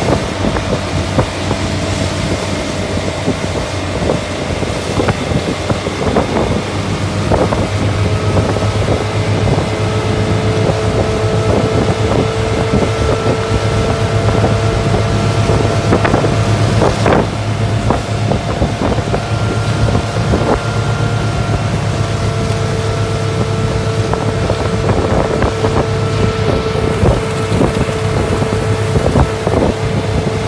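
Bayliner motorboat's engine running steadily under way while towing a wakesurfer, over rushing wake water and wind on the microphone, with a few brief sharp knocks, the loudest about seventeen seconds in.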